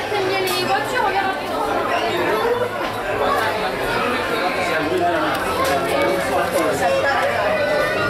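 Background chatter of many shoppers talking at once in a busy store, with no single voice standing out.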